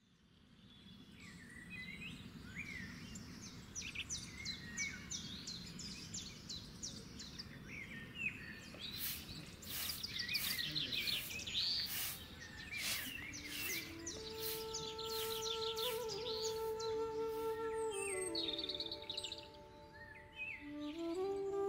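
Birdsong ambience fading in: many small birds chirping and twittering in quick series over a low steady rumble. About fourteen seconds in, a gentle flute-like melody of held, stepping notes enters.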